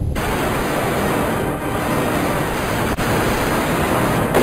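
Loud, steady hiss of TV static (white noise) that cuts in suddenly, with a single click about three seconds in.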